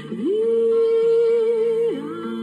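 A woman's voice gliding up into one long held note and letting it fall away near the end, over a soft acoustic guitar accompaniment.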